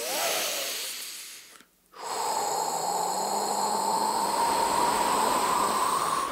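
Cartoon wolf's voice drawing in a big breath, then after a short pause blowing out hard in one long, steady gust of about four seconds, with a faint whistling tone in the rush of air.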